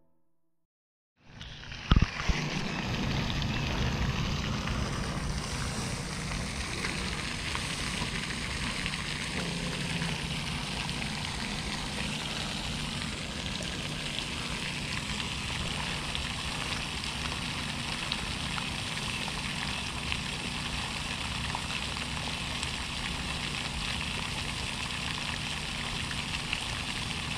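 Steady hiss of splashing water from a pond's aerating spray fountain, starting about a second in, with a low rumble underneath and a single sharp knock about two seconds in.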